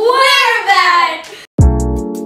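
A child's voice singing out a loud, gliding call for about a second and a half, then a sudden cut to music: a deep bass beat about every three-quarters of a second under a fast high ticking.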